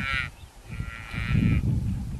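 African buffalo calf bleating in distress as hyenas attack: a high, wavering call that ends just after the start, then a second, shorter one of about a second in the middle.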